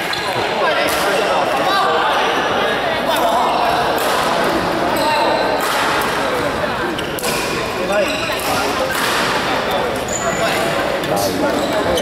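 Badminton rackets striking shuttlecocks, in irregular sharp hits from several courts at once, over a steady hubbub of voices in a large echoing hall.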